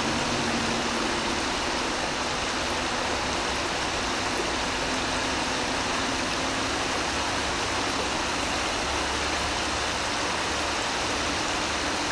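Steady rushing of flowing river water, an even hiss that does not change.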